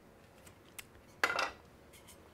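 A small click, then a brief clatter as a metal tumbler is handled and lifted. The clatter a little after a second in is the loudest sound.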